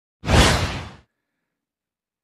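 A single whoosh transition sound effect, starting suddenly just after the start and fading away within about a second.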